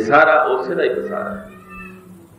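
A man's voice draws out a long, wavering phrase in a chant-like delivery, fading about a second and a half in. A steady low hum runs underneath.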